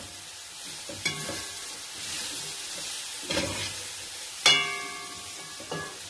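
Carrots and green beans sizzling in hot oil in an aluminium pot over a high gas flame while they are stirred. The stirring utensil knocks against the pot three times; the loudest knock, about four and a half seconds in, leaves a brief metallic ring.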